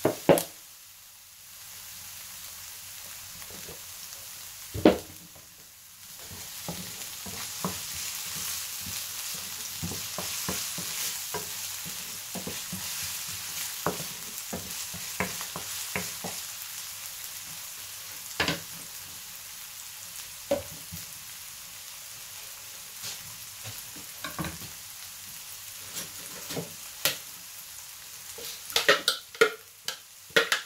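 Chopped red onions sizzling in olive oil in a non-stick frying pan, with a wooden spoon stirring and knocking against the pan at intervals. There are sharp loud knocks near the start and about five seconds in, and a quick run of them near the end.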